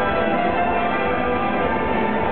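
Orchestra playing a waltz: many sustained string and wind tones layered into a steady, continuous texture.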